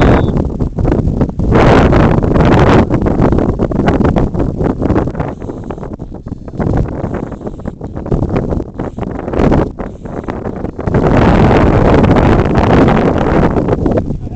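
Wind buffeting the camera microphone in loud gusts. It swells about two seconds in and again for a couple of seconds near the end, with weaker, choppy rumbling in between.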